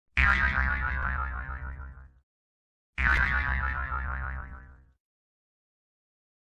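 A short logo sound effect played twice, about three seconds apart; each one starts suddenly and fades out over about two seconds.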